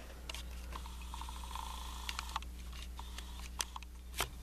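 A few faint clicks and taps of plastic DVD and Blu-ray cases being handled, over a low steady hum.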